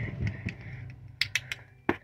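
Wooden Jacob's ladder toy clacking as its blocks tumble over one another: about half a dozen sharp, irregular clicks, the loudest near the end.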